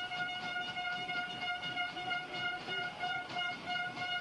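A horn holding one long, steady note through the snap and the play, over the noise of a stadium crowd.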